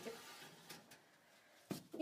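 Quiet handling of a loaded instrument tray going into a steam autoclave's chamber, with a small click, then one sharp clunk near the end.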